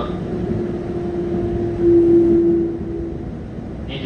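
Keikyu 600 series electric commuter train running, heard inside the passenger car: a steady rumble with a steady whine that swells about two seconds in and fades a second later.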